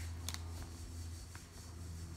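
Faint handling noise as a hand moves over a plastic mailer bag and picks up a phone: two light clicks about a second apart over a steady low hum.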